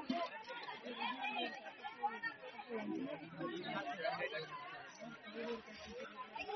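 Faint chatter of several people talking at once, overlapping voices with no single clear speaker.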